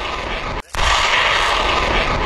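Starstreak missile fired from a Stormer HVM's launcher: a loud rushing blast that breaks off briefly about half a second in, then starts again louder.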